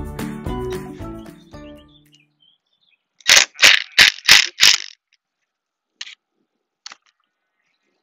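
Background music fading out over the first two seconds, then a cordless drill driver driving a screw into the corner of a wooden frame in five short bursts about a third of a second apart, followed by two faint clicks.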